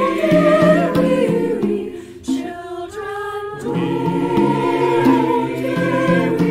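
Mixed choir of men's and women's voices singing a sustained, largely unaccompanied carol. About two seconds in, the sound thins to a few higher voices for over a second, then the full choir comes back in.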